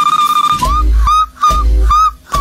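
A girl's high falsetto voice holding one long note, then short high yelps over a song's heavy bass beat that comes in about half a second in.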